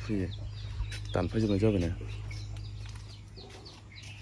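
Chickens clucking in the background, with a steady low hum underneath.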